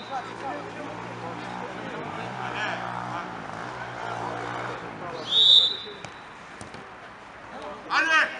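A referee's whistle blown once, a short, sharp, high blast a little over five seconds in, signalling the set-piece kick to be taken. Players' voices carry on in the background.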